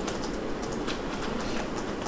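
Steady hiss and low hum of courtroom room noise picked up by the witness-stand microphone, with faint scattered clicks.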